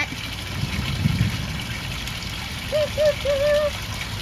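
Water trickling steadily from a barrel garden fountain, with a low rumble swelling about a second in. A short voice-like sound of a few pitched notes comes about three seconds in.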